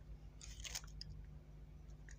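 A short crackling scrape of handling about half a second in, as a metal tape measure is picked up and brought against the soldering iron, over a faint steady low hum.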